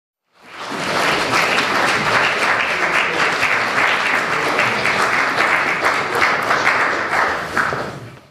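Audience applauding: dense clapping that swells up within the first second, holds steady, then dies away at the end.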